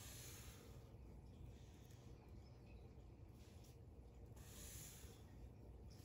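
Near silence, with faint soft strokes of a black Sharpie marker drawn along a plastic protractor's edge on paper.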